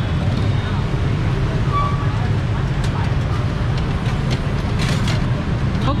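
Steady rumble of busy street traffic, with faint background voices and a few brief clicks.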